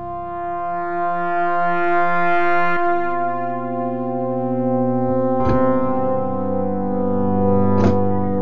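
Thor software synthesizer playing a Casio CZ-style phase-distortion patch: held pad chords with a grainy texture, moving to a new chord about three seconds in. Two brief clicks sound later in the phrase.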